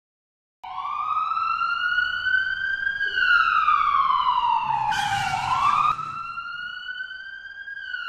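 Ambulance siren wailing, starting just under a second in, its pitch sliding slowly up and down with a full cycle of about five seconds. A brief hiss comes about five seconds in, after which the siren is quieter.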